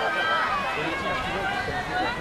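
Indistinct talk of spectators close by, over a steady outdoor background.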